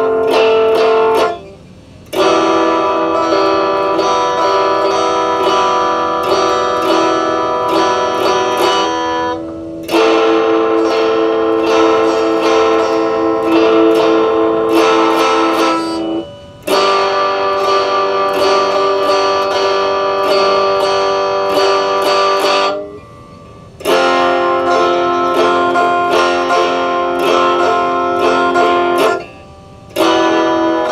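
Stratocaster-style electric guitar played through an amp: phrases of quickly picked notes, broken by short pauses every several seconds.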